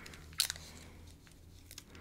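Paper being handled close to the microphone: one sharp crinkle about half a second in, then a few soft paper ticks near the end.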